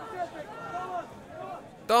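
Distant voices calling out on a football pitch, with faint outdoor field ambience.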